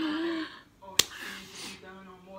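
A single sharp click about a second in, followed by a short breathy hiss.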